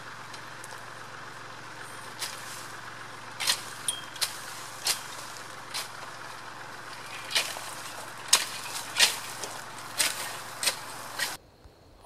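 A steady engine drone, with short sharp clicks scattered irregularly over it; it cuts off near the end.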